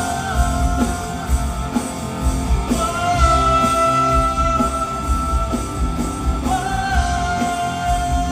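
Live Hindi pop song from a male singer and band, with long held notes that shift pitch a couple of times over a steady bass beat.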